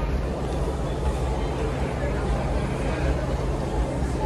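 Steady background noise with a low, even hum and indistinct voices.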